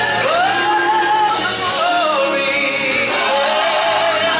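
Gospel choir singing with instrumental accompaniment, a voice sliding up into a long held note just after the start.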